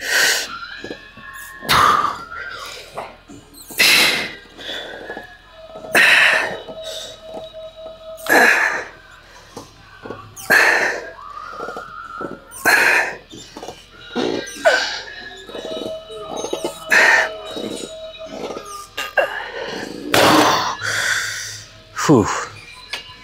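A man breathing out hard and sharply, about one forceful exhalation every two seconds and some ten in all, the effort breaths of a heavy set of leg extension reps, picked up close by a clip-on microphone.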